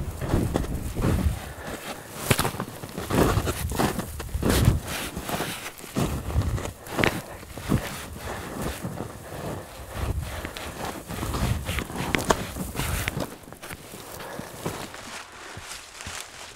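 Footsteps crunching down through deep snow on a steep slope, irregular steps about one or two a second, growing sparser and quieter near the end.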